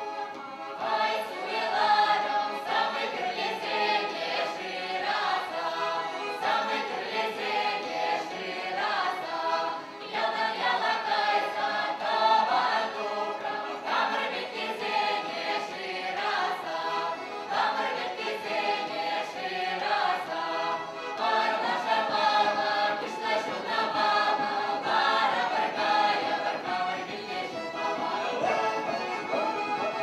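Chuvash folk song sung by a mixed group of men's and women's voices together, accompanied by fiddle, button accordion and a drum keeping a steady beat.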